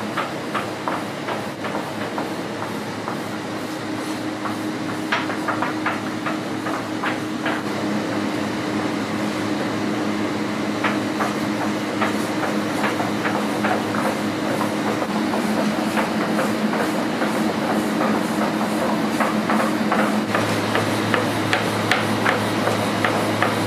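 Repeated light clacks and knocks of small wooden rolling pins on a worktable as dumpling wrappers are rolled out by hand, over a steady low hum.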